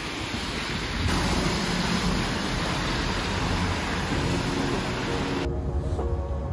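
Steady loud hiss of outdoor street noise on a wet, slushy night. About five and a half seconds in it cuts to a quieter background and music begins.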